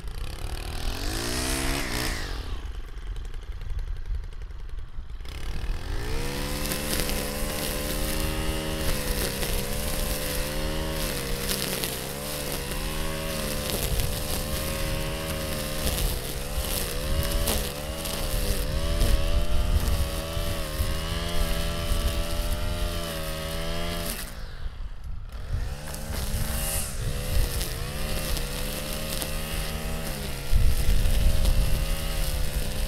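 Stihl FS 90R string trimmer engine winding down after a rev, then opened up to high throttle about five seconds in to cut tall dry grass and brush with .080 line. Its pitch wavers as the line bites into the grass, drops briefly about five seconds before the end and picks back up.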